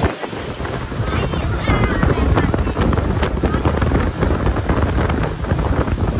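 Heavy wind buffeting the microphone aboard a motorboat under way, a loud, continuous rush strongest in the low end, with the boat's running noise beneath it.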